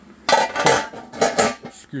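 Metal clinking: about four sharp clinks and rattles in the first second and a half.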